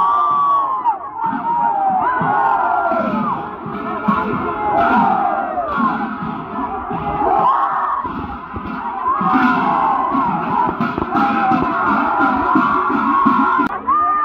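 A crowd of many voices shouting and cheering together, overlapping continuously.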